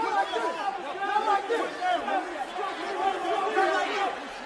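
Several men shouting and talking over one another at once, no single voice standing out.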